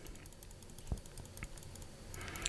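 Faint clicks from computer controls at a desk over quiet room tone, with one clearer click about a second in.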